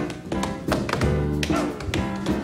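Tap shoes striking a wooden stage in a quick, dense run of taps, over live jazz accompaniment with sustained bass and piano notes.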